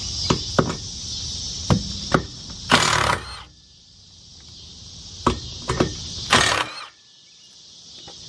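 Cordless power tool run in two short bursts, loosening the boat trailer's bunk bolts, with scattered clicks of metal tools on the frame between them. Insects chirp steadily in the background.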